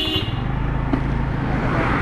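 Scooter engine running steadily under road noise while riding. A car passes close alongside near the end, and its road noise swells.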